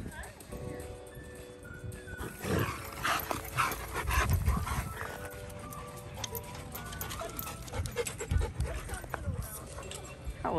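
Dog panting, with irregular louder stretches in the middle and again near the end.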